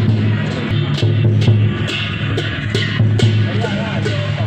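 Loud music with a steady beat, a sharp strike about twice a second over a continuous low drone.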